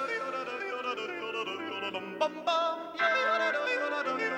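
Male voice yodeling, flipping rapidly between chest voice and falsetto with wobbling pitch, over held low chords from the band. About two seconds in, there is a sharp high break in the voice.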